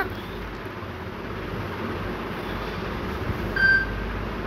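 Steady, even background hiss with no clear source. A short, faint high tone sounds about three and a half seconds in.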